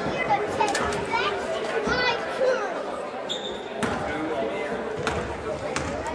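Voices of spectators and players echoing in a gymnasium, with a basketball bouncing on the hardwood court several times, about once a second.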